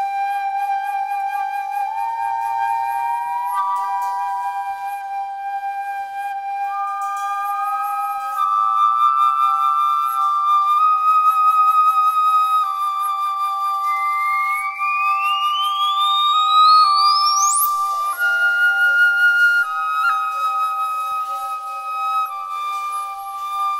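Free-improvised music: a concert flute plays long held notes over steady electronic tones from a modular synthesizer, the pitches stepping slowly from one sustained note to the next. About two-thirds of the way through, one high tone sweeps steeply upward and then cuts off.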